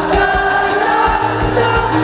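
Live rock band heard from within a large crowd: acoustic and electric guitars over bass and drums keeping a steady beat.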